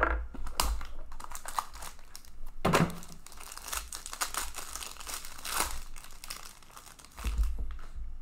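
Foil wrapper of a hockey trading-card pack crinkling and tearing as it is opened by hand, a dense run of crackles thickest in the middle.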